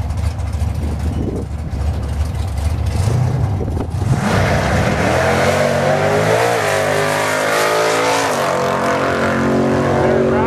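Drag race car at the starting line with its engine running low and steady, then launching hard about four seconds in. It accelerates down the strip at full throttle, the engine note climbing and dropping back twice as it shifts gears.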